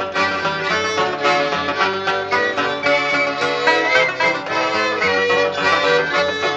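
Instrumental break in a German folk song, with string instruments playing the tune between verses and no singing.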